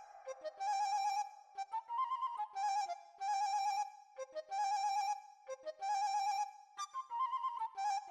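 Instrumental background music: a single high melody line in short phrases that repeat about once a second, with no bass.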